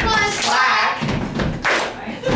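A teenager rapping an improvised verse over a repeating thumping beat.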